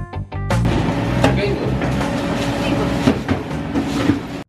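Guitar background music that gives way, about half a second in, to the busy din of a sandwich shop: indistinct voices and counter clatter, with music still running underneath.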